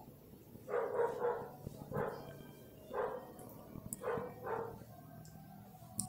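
A dog barking, about six short barks spread over a few seconds, some in quick pairs.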